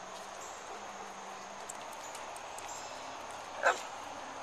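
One short, sharp dog bark near the end, over a faint steady outdoor background.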